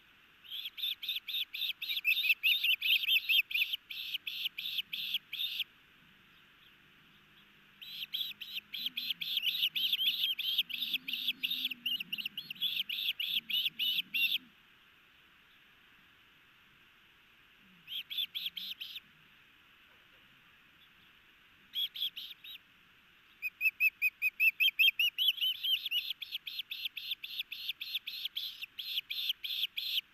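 Juvenile osprey food-begging at the nest: long runs of rapid, high, piercing chirps, about five a second, in bouts of several seconds with short pauses between.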